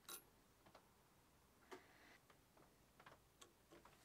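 Faint small metal clicks and ticks as a screwdriver works a tiny screw into a steel lathe slide: about six irregular clicks, the sharpest at the very start.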